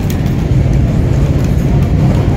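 Steady low rumble of airport terminal background noise, even and unbroken, with no distinct events.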